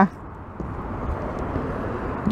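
Steady outdoor background rumble with no distinct events, a little louder from about half a second in.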